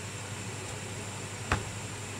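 Room tone between sentences: a steady hiss with a low hum, and a single short click about one and a half seconds in.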